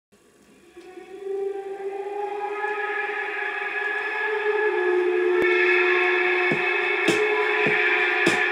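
A Philly soul record playing from a 7-inch vinyl single on a turntable: the intro fades up from silence over the first couple of seconds into held chords that keep building, with the first drum hits coming in near the end.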